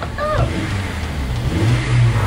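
A car engine running and revving, with a short vocal sound about a third of a second in.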